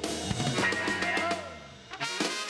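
Live ska band with horns playing, the drum kit's hits standing out; the sound thins out and drops about a second and a half in before the drums come back in at the end.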